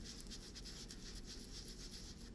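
Foam ink blending tool rubbed repeatedly over kraft cardstock, a faint scratchy rubbing.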